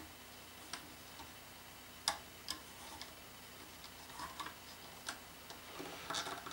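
Faint, scattered clicks and taps of fingers and rubber bands against the clear plastic pegs of a Rainbow Loom as bands are stretched over and pressed down onto them, the loudest about two seconds in.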